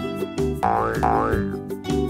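Children's cartoon background music with two short rising 'boing' sound effects, one after the other, near the middle.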